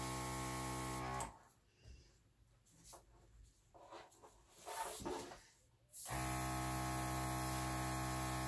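Airbrush compressor running with a steady electric hum, cutting out abruptly about a second in and starting up again about six seconds in.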